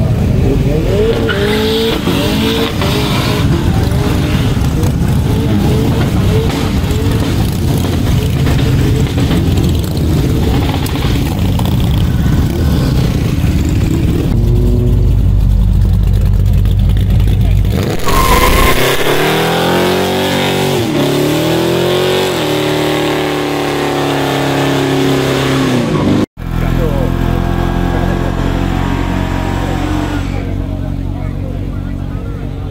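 Cars doing burnouts: engines revving hard with tyre squeal and crowd voices. About halfway through, a deep engine rumble comes as a classic Dodge Charger drives past, followed by an engine revving up and down in pitch. The sound cuts out abruptly near the end and then resumes.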